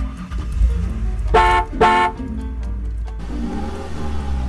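Car horn sound effect beeping twice in quick succession, two short toots about half a second apart, over a steady low engine rumble as the toy car drives off.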